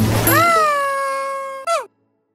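The end of a children's cartoon jingle. The beat stops and a single long, drawn-out cartoon call rises, holds while sliding slowly lower, and drops away sharply near the end.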